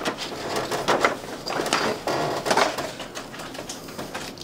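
Leather and hand tools being handled on a worktable: irregular rustling and scraping with light knocks.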